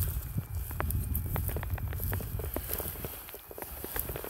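Footsteps crunching through dry grass and brush, with many small sharp crackles and snaps, over a low rumble that dies away about three seconds in.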